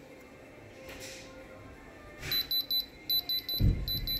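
Handheld Diamond Selector II diamond tester beeping in quick high-pitched pulses, about five a second, in three short bursts from about halfway in, as its probe touches an earring stone. The beeping is the tester's signal that the stone reads as diamond. A low thump of handling comes just before the last burst.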